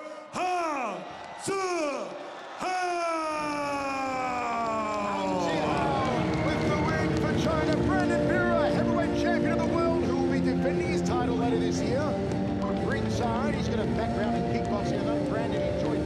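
A ring announcer's drawn-out call of the winning fighter's name, three stretched syllables each falling in pitch, the last held for about three seconds. Crowd noise swells underneath, and arena music takes over from about five seconds in.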